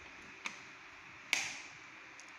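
Two short clicks from hands working a lab trainer kit's patch cords and controls: a faint one about half a second in, then a sharper, louder one just past the middle that rings off briefly.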